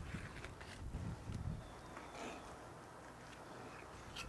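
Fillet knife sliding between a striped bass fillet and its skin on a cleaning board: faint, short scraping strokes, mostly in the first half.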